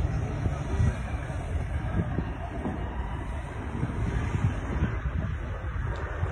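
Low rumble of a heavy articulated lorry driving past, with irregular wind gusts buffeting the microphone.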